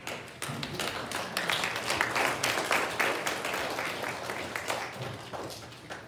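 Congregation applauding, a dense patter of many hands clapping that swells in the first seconds and dies away toward the end.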